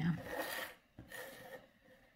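A canvas board sliding and turning on a wooden tabletop: two short scrapes, the second fainter, about a second apart.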